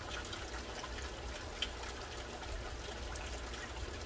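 Water trickling steadily from vertical PVC aquaponics grow towers into the grow bed below, with a low steady hum beneath it.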